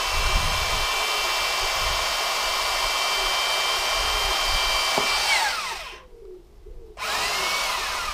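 Cordless drill running steadily with a whine as its bit bores through the rubber of a car tyre, then winding down about five seconds in. After a second's pause it spins up again briefly and winds down near the end.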